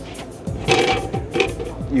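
Screw-in plastic deck plate being twisted off the water-ballast tank opening in a fibreglass cockpit floor: a short rasping scrape of the threads about a second in, over background music.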